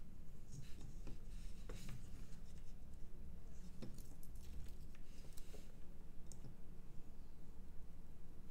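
Small handling sounds from soldering work: light clicks and a few brief rustles as a circuit board and parts are moved about on a work mat, with one sharper click just before the four-second mark. A low steady hum runs underneath.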